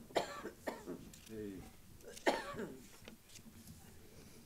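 A few short coughs and throat-clearings, the loudest a little over two seconds in, with a brief low murmur of a voice between them.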